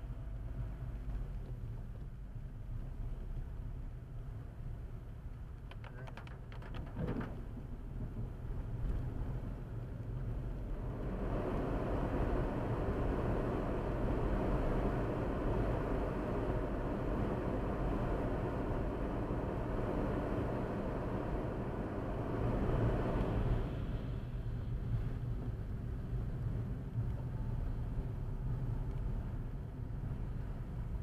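Car driving on a wet road in rain, heard from inside the cabin: a steady low road and engine rumble as it gathers speed. A louder rushing hiss of tyres and rain joins about a third of the way in and cuts off sharply a little after two-thirds through.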